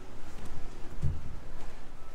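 Wind buffeting the microphone: an irregular low rumble with no clear events.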